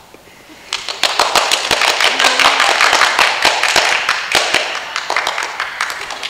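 Audience applauding, starting under a second in and thinning out toward the end.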